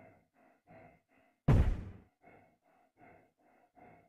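A person panting heavily in a steady rhythm, about two to three breaths a second, like a player running hard. About a second and a half in comes a single loud thud that dies away over about half a second.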